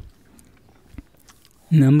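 A quiet pause with a few faint small clicks, then a voice starts speaking near the end.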